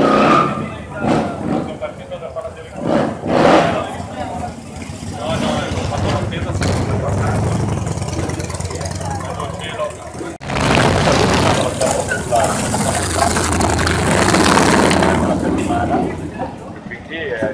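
Motorcycle engines running, a steady low rumble under the chatter of people talking. About ten seconds in, the sound breaks off for an instant and comes back louder.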